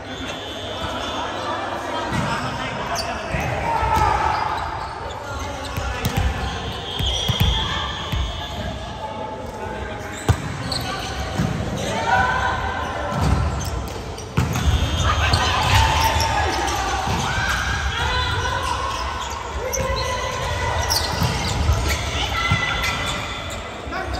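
Volleyball rally in a large gym hall: sharp hand-on-ball hits, the sharpest about ten seconds in, with players shouting calls, all echoing.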